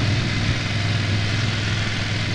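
Motorcycle engine running steadily at low speed, a constant low drone under an even hiss of wind and road noise.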